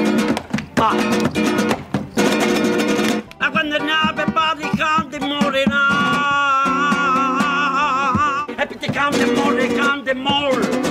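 Acoustic guitar strummed in a quick rhythm, then a man singing one long, held note with wide vibrato over sustained guitar chords from about three seconds in. The strumming returns near the end.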